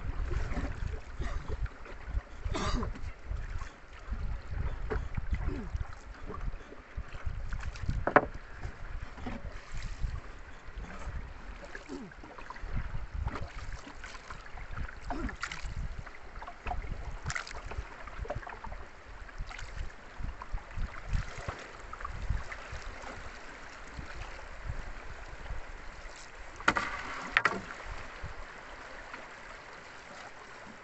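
A wooden paddle working a small wooden boat along a river: uneven dips and splashes over a low rumble, with several sharp knocks spread through the stretch.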